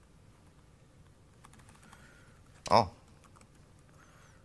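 Faint keystrokes on a laptop keyboard, a run of light clicks as a terminal command is typed, followed a little over halfway through by a brief "oh" from a man.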